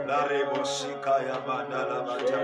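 Men's voices singing or chanting a worship song together, in held notes that waver.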